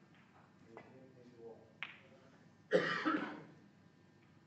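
A person coughs once, loudly, a little under three seconds in. Just before it comes a single short, sharp click, and faint murmuring voices come earlier.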